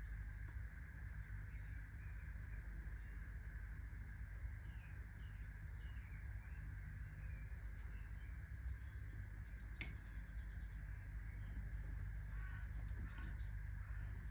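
Faint background ambience: a low steady rumble with a few faint bird chirps, and one sharp click about ten seconds in.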